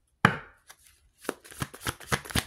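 Tarot cards being handled: one sharp knock of the deck on the table, then, after about a second, a run of quick clicks and slaps from cards being shuffled.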